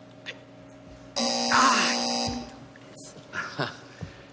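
Game-show signal buzzer sounding once for about a second, a steady many-toned buzz. It marks the end of the guess on a clue that went unanswered.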